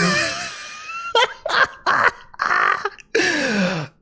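A man's wordless vocal sounds: short throaty exclamations, ending in a long falling groan near the end.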